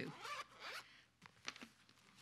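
A Bible being opened and leafed through on a lectern: a faint rustling slide for about a second, then a few light flicks and taps of the pages.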